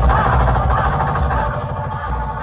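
Loud electronic dance music with heavy, pulsing bass, played through towering stacks of DJ speaker boxes. The bass thins out about one and a half seconds in, and the music begins to fade.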